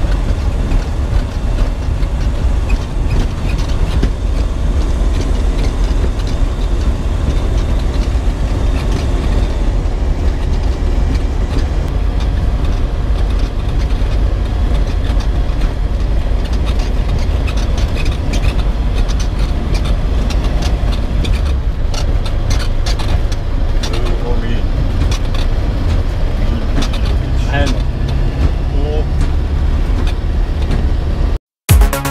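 Ikarus C42 ultralight's propeller engine running steadily as the aircraft rolls along the runway, with a heavy low rumble.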